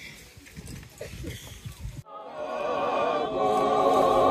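Faint voices murmuring, then, after a sudden break about halfway through, a choir of many voices singing together, swelling in loudness with a wavering, vibrato-like pitch.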